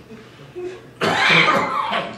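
A man coughing into his hand: one loud cough lasting about a second, starting halfway through.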